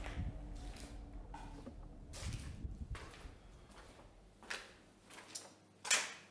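Scattered footsteps and small knocks of one person moving through a quiet basement, picked up by an amplified recorder, with a sharper knock near the end. A low rumble underneath fades away about five seconds in.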